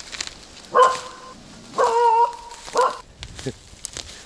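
A small dog barking three times, about a second apart, the middle bark drawn out for about half a second.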